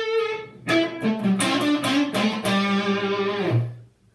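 Electric guitar, a Les Paul-style solid-body, playing a short picked single-note phrase. It starts about a second in and ends on a low held note that is cut off shortly before the end.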